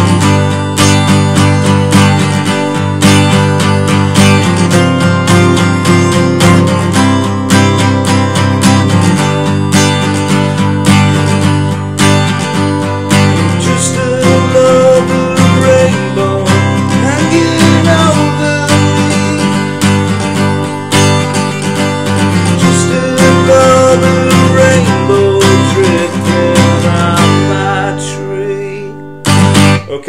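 Taylor 214ce steel-string acoustic guitar, capoed up the neck, strummed through chord changes in a steady rhythm with some melodic lines over the chords. The playing dies away near the end.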